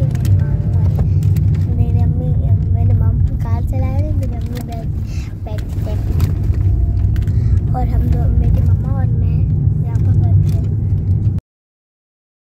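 Steady low rumble of a moving car heard from inside the cabin, with people talking over it. The sound cuts off abruptly about a second before the end.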